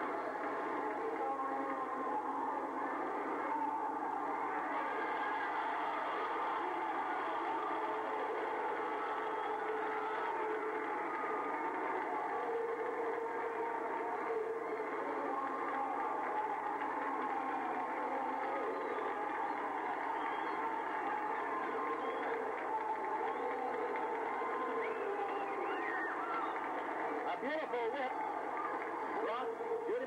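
Steady din of a roller derby arena crowd, many voices cheering and talking at once with no single voice standing out. The sound is thin, with no low end, as on an old kinescope television recording.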